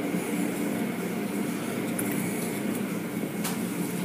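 Automatic car wash's rotating cloth brush scrubbing across the windshield: a steady wash of slapping strips and spray over a low machinery hum, heard from inside the car, with one short click near the end.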